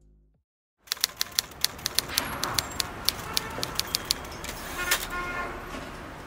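Keys clicking at an irregular typing pace, about four strokes a second, over a steady background hiss. A brief pitched tone sounds about five seconds in.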